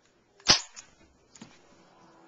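A single sharp shot from an airsoft gun about half a second in, followed by a fainter click about a second later.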